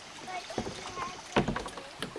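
Kayak paddle set down across the dock boards and kayak, a few sharp knocks about two-thirds of the way in.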